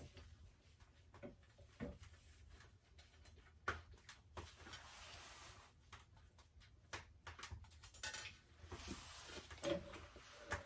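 Faint, scattered clicks and light knocks of a steel pipe and a split oak clamp block being handled on steel tubing, with some soft rubbing between them.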